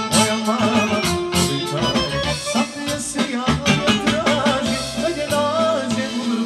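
Live folk band playing: accordion and saxophone carry an ornamented melody over a steady drum-kit beat, with a male singer.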